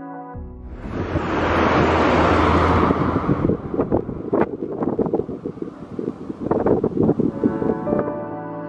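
Live roadside sound with no music: road noise from a vehicle on the highway swells over the first three seconds, then gusts of wind buffet the microphone in uneven bursts.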